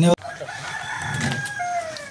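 A rooster crowing once, a drawn-out call that drops in pitch at the end.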